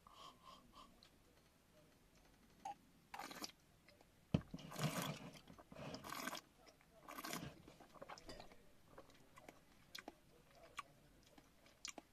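Quiet mouth sounds of someone tasting cider: a sip, then a few short airy slurps and swishes as the cider is worked around the mouth, with faint mouth clicks later on.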